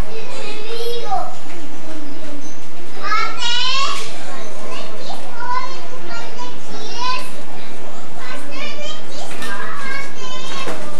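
Children's voices shouting and squealing at play, with high, wavering calls that come and go several times.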